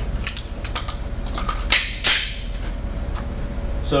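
Light metallic clicks of a semi-automatic pistol being handled, with two louder sharp clacks close together about halfway through.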